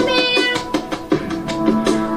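A worship song playing: a woman singing over instrumental accompaniment, with held, sliding notes and a short dip in loudness mid-phrase.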